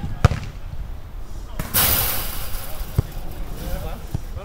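A football being kicked on an artificial grass pitch: a sharp thud just after the start and another about three seconds in, with a short rush of noise between them. Faint shouts from players are heard.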